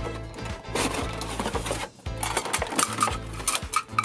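Handling noise from unpacking a boxed plastic bowl, spoon and cup set: a run of crackles, clicks and taps from the packaging and plastic pieces, with clicks clustering near the end as the bowl and spoon come out. Background music plays underneath.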